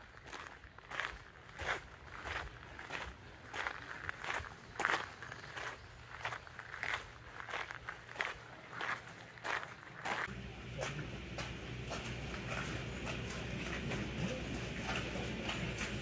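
Footsteps crunching on a gravel path at a steady walking pace, about one and a half steps a second. About ten seconds in, the steps grow fainter under a steadier outdoor background.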